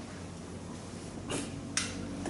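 Two short, sharp taps of a marker on a whiteboard, less than half a second apart near the end, over a faint steady room hum.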